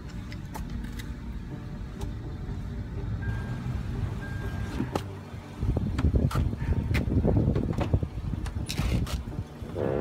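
Steady low rumble of a car's cabin, with two short beeps about a second apart. Then, from about halfway through, a rear door is opened and someone climbs out of the car, with a few clicks and knocks.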